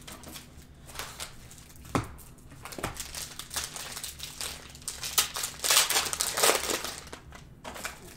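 Cellophane wrappers of trading-card packs crinkling as the packs are handled, with a couple of sharp clicks in the first few seconds and a louder run of crinkling about six seconds in.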